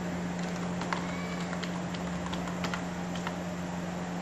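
Computer keyboard keystrokes, irregular single clicks as a line of Java code is typed, over a steady low hum and background hiss.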